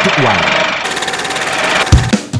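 A man's voice ends the words "ทุกวัย" ("for all ages"), then a fast, even mechanical clatter sound effect runs for about a second and stops with a loud low thump near the end.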